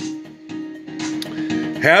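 Background music with guitar, a steady held note running under it.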